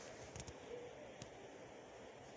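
Faint room hiss with a few light clicks and taps from a plastic French curve ruler being shifted into place on fabric.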